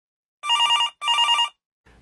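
Telephone ringing: two short rings of about half a second each, with a brief gap between them, each a fast warble between two notes.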